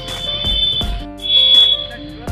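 Background music with a steady beat and a shrill, high held tone that comes in stretches with short breaks.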